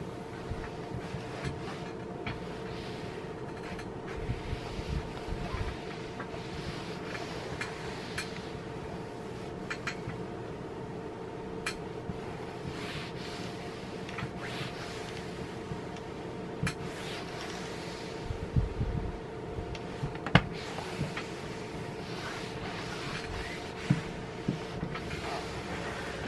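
Electric iron sliding back and forth over damp cotton muslin as the water is ironed out, giving soft hissing swishes over a steady hum. A few sharp clicks and low knocks from the iron and board, the loudest about twenty seconds in.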